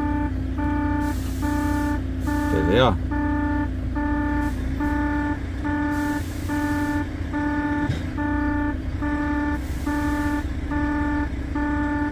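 Truck dashboard warning chime beeping in an even repeating pattern, about two beeps a second, signalling that the fifth wheel is not locked as the truck is put in gear to pull away. The truck's engine runs steadily underneath.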